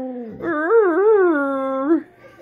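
Alaskan malamute howling: one call starting about half a second in, wavering up and down in pitch, then held on a steady note until it breaks off at the end.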